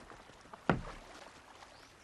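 A single thump about two-thirds of a second in: a heavy body landing in a small wooden rowboat.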